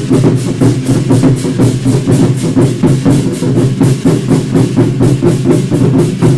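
Several drummers beating large barrel war drums with sticks in a fast, even rhythm, about five strokes a second, loud.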